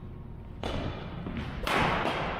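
Badminton doubles rally on a wooden gym floor: players' feet thud and scuff on the boards and rackets hit the shuttlecock. The first sound comes suddenly about half a second in, and the loudest comes near the end as a player lunges and swings.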